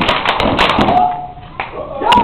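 Step dancers stomping and clapping: a dense run of sharp stomps and claps in the first second, thinning out after that, with voices mixed in.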